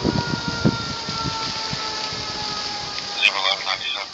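Emergency siren heard from a distance, a steady wail that sinks slowly in pitch, over a low rumble of background noise.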